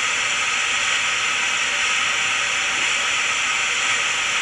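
Steady hiss of radio static from a scanner's speaker, tuned to a cordless phone's channel with no voice being sent over it.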